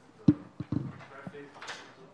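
Faint, off-microphone speech in a lecture hall. A sharp knock comes about a quarter second in, then a few more clicks and a brief rustle.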